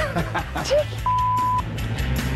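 A single steady electronic beep of about half a second, the kind of bleep tone laid over a spoken word, over background music. A short stretch of laughing voice comes just before it.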